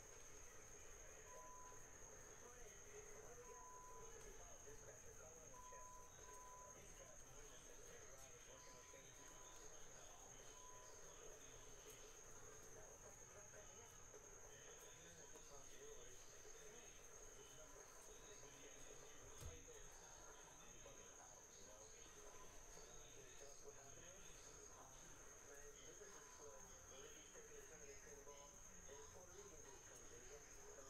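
Near silence: faint room tone with a steady high-pitched whine.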